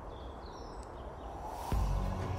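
A few short, high bird chirps over a low outdoor rumble, then a sudden deep thump near the end.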